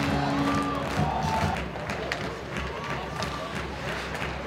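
Ice hockey arena crowd cheering after a goal, with arena music holding a steady note until about a second in and a voice calling out over the noise.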